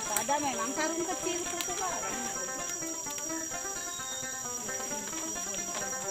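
Steady high-pitched drone of forest insects, unbroken throughout, with music and scattered faint voices beneath it.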